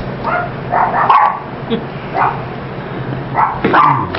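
A dog barking repeatedly in short, separate barks.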